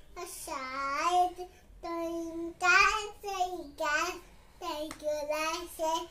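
A young child singing a nursery rhyme alone, without accompaniment, in short drawn-out phrases with brief pauses between them.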